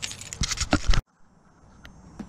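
Metal clinking and rattling from a front licence plate and its mounting plate being handled as they are taken off the car's bumper. The sound stops abruptly about a second in.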